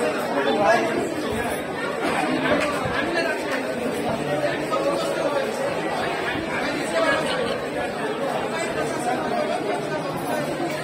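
Chatter of a large crowd: many people talking at once, voices overlapping steadily.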